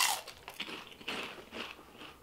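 A person biting into and chewing crunchy fried pork rinds (Baken-ets): a loud crunch right at the start, then irregular, softer crunches of chewing.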